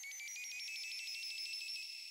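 Synthesized electronic music: high tones gliding toward each other and then holding steady, fluttering in fast even pulses, over faint sustained high notes.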